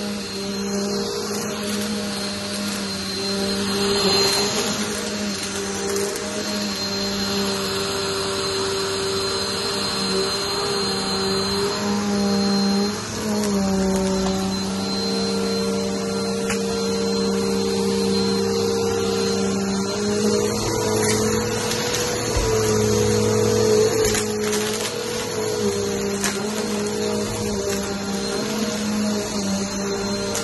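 Stick vacuum running on a shaggy rug, its motor holding a steady hum whose pitch shifts slightly a little before halfway.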